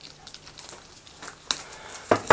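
Faint handling sounds of a stack of plastic Venetian-blind slats being wrapped with PVC electrical tape: light crackles and small clicks, with one sharper click about one and a half seconds in.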